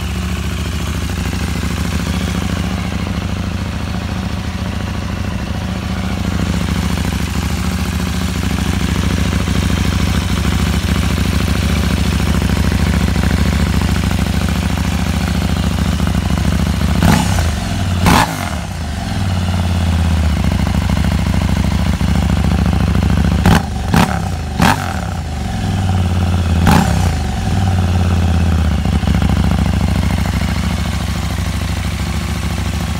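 KTM 890 Duke R parallel-twin idling through its stock silencer with a decat pipe. In the second half there are several quick throttle blips, each rev falling back to idle. The exhaust is a tiny bit raspy.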